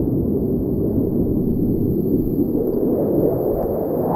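Whitewater rapid rushing steadily around a kayak running it, a low, even roar of churning water with no break.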